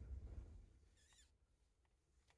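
Near silence inside a moving car: only a faint, steady low rumble of the car.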